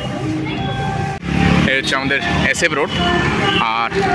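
Busy street ambience: people's voices talking over road traffic, with the sound changing abruptly about a second in.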